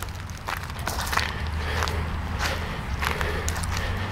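Footsteps crunching through dry leaf litter and twigs, a step about every half second, over a steady low rumble.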